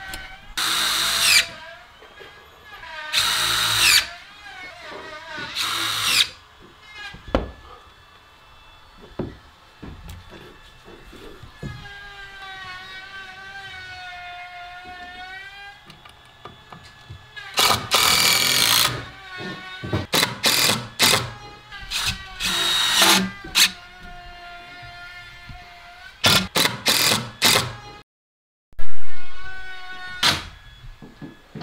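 DeWalt cordless drill driving screws into wooden wall framing, in repeated short bursts of a second or so each.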